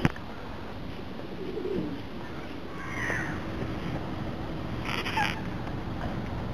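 Steady outdoor background noise with a few short bird calls; the clearest is a brief call just after five seconds in.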